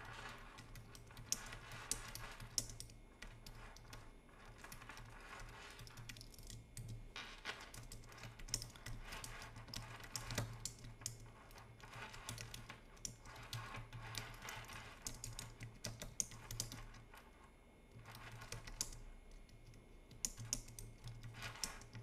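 Typing on a computer keyboard: a steady run of faint key clicks as a message is typed, with a short lull about three-quarters of the way through, over a low steady hum.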